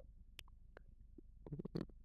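Near silence: low room hum with a few faint, scattered clicks and some soft small sounds near the end.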